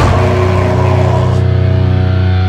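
Heavy metal band striking a chord with distorted electric guitars and bass together with a drum hit, then letting the chord ring out steadily. The bright crash on top dies away about one and a half seconds in.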